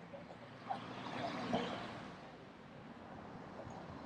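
Quiet outdoor ambience with faint, distant voices and a brief swell of noise that peaks between one and two seconds in, then settles.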